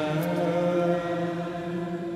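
The final note of a sung "Amen", voices in unison holding one long chanted note after a small step up in pitch, beginning to fade near the end.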